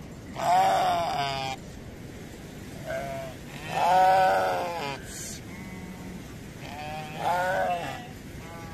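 Sheep in a flock bleating: about four wavering calls, the loudest about four seconds in and the last near the end.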